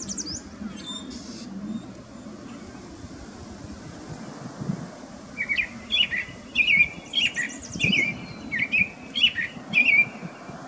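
Songbird singing: a few thin, high squeaky notes in the first second or so, then from about halfway a run of about a dozen short chirping notes, roughly two a second.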